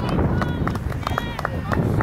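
High-pitched women's voices shouting and exclaiming excitedly as a shot goes in on a football pitch, over a steady rumble of wind on the microphone.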